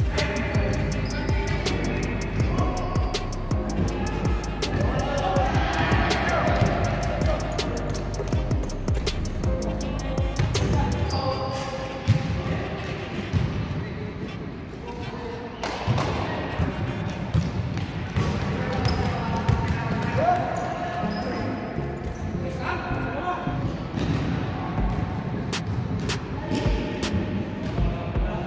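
Basketball bouncing on an indoor court floor during play, in many sharp irregular hits, with voices and music mixed in underneath.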